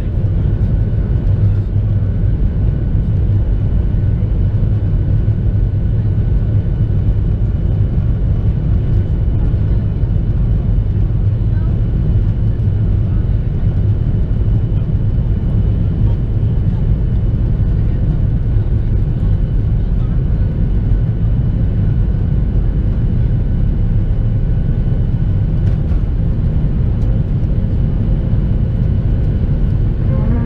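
Boeing 737-700's CFM56-7B engines at takeoff thrust, heard inside the cabin over the wing: a steady, loud rumble with a faint high whine through the takeoff roll, lifting off near the end.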